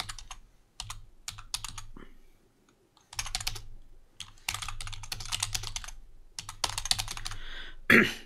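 Typing on a computer keyboard: several quick runs of keystrokes with a pause of about a second near the middle.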